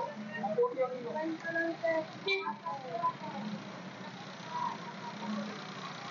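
Background chatter of vendors and shoppers talking at a fish market, busier in the first half and thinner later, over a steady low hum.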